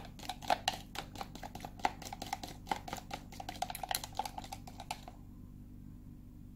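Chopsticks beating raw egg with chopped vegetables in a plastic container, rapidly clicking against the container's sides and bottom at about ten strokes a second. The beating stops about five seconds in.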